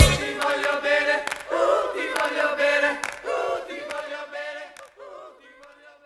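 The fade-out ending of a rock song: the drums and bass stop at the start, and voices singing together carry on alone, fading steadily away.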